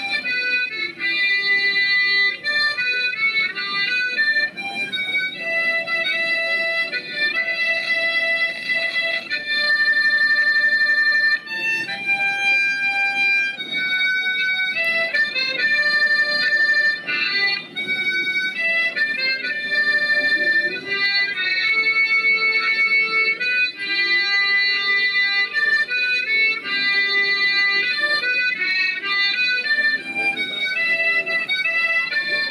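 Harmonica played into a handheld microphone cupped against it. It plays a melody of held notes, often sounding several at once as chords, changing every half second to two seconds without a break.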